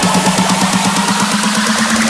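Big room EDM build-up: a fast drum roll over a synth note that slowly rises in pitch, with a rising noise sweep and the deep bass thinned out.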